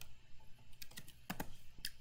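A few light keystrokes on a computer keyboard, about six separate taps spaced unevenly: typing out a short tag word and entering it.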